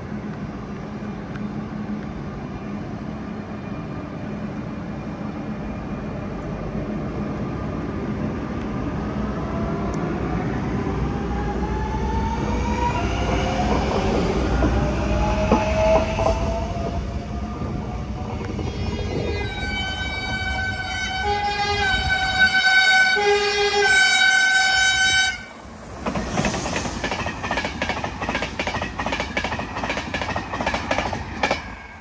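A passenger train running through a station. A rumble builds, with a rising whine, then a train horn sounds in several tones for about six seconds and cuts off suddenly. After it come the rapid clicks of the coaches' wheels over the rail joints as they pass close by.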